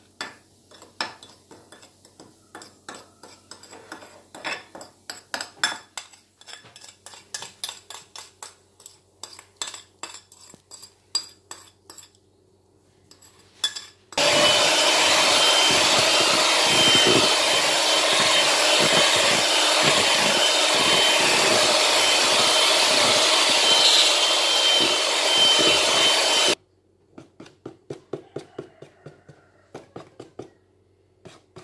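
A spoon clinks and taps repeatedly against a small glass bowl while stirring. Then an electric hand mixer runs steadily with a thin high whine for about twelve seconds, beating cake batter, and cuts off suddenly, followed by a few more light taps.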